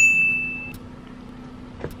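A single bright, bell-like ding that strikes sharply and fades away within about a second, over a faint steady low hum.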